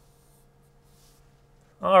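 Faint, light pencil strokes scratching on drawing paper, a couple of brief strokes in the first second, then a man's voice begins just before the end.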